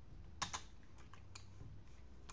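A few faint computer keyboard and mouse clicks over a low steady hum, two close together about half a second in and two more a little after a second.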